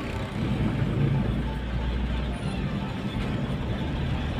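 Steady engine and road noise inside a moving car's cabin, heaviest in the low end.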